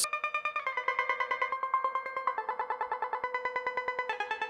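Stylophone playing a slow line of sustained, buzzy notes that step down in pitch, twice. Each note is chopped into a fast, even stutter of about eight pulses a second by a tremolo effect, and is washed in reverb.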